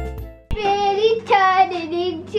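Background music fading out over the first half second, then an abrupt cut to a young girl singing in a high voice, holding and bending a few notes.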